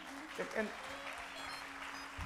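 Congregation applauding, with background music holding one steady note underneath.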